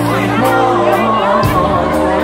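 A live Thai luk thung band playing, with held keyboard-like tones and a few drum hits, and crowd voices over the music.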